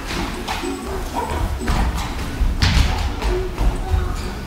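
Boxing sparring in a ring: several dull thuds of gloved punches and footwork on the canvas, the sharpest about two and a half seconds in.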